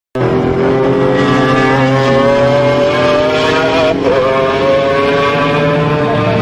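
Car engine accelerating hard, its pitch climbing steadily. About four seconds in there is a brief dip, as at a gear change, and then it climbs again.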